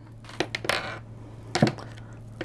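Oracle cards being dealt onto a table: a few quick light slaps and a brushing slide of card on card and tabletop, three in all.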